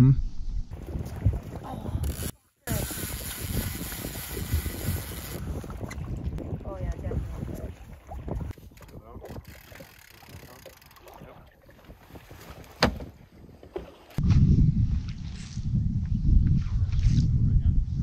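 Wind rumbling on the microphone aboard an open fishing boat on a lake. The sound drops out briefly a couple of seconds in, and the wind rumble gets much louder for the last few seconds.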